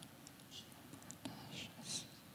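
A hushed room with faint whispering: a few soft, breathy hisses about half a second in and again near the end, and scattered small clicks.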